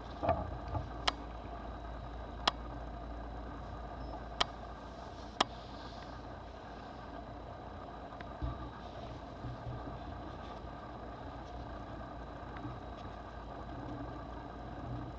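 Handling of an old paper dime-novel pamphlet, with four sharp clicks in the first half and a few soft rustles and knocks, over a steady low background hum.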